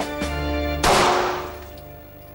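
A single 9 mm pistol shot fired into a water-filled wooden barrel: one sharp report about a second in, with a ringing tail that dies away, over background music.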